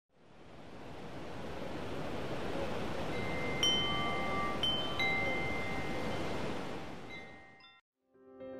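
Wind chimes ringing, a handful of struck tones that hang and ring on, over a steady rush of wind that swells in at the start. Both fade and stop just before the end.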